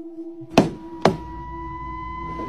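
Two sharp knocks about half a second apart, over a steady droning tone; after the second knock, higher held tones join the drone.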